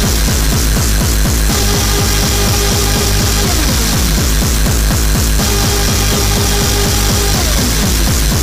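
Early gabber hardcore techno track: a fast kick drum, about three beats a second, each hit falling in pitch, under a dense, harsh noise layer. A held synth tone drops out and comes back a couple of times.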